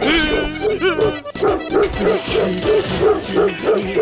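Cartoon dogs barking over rhythmic background music.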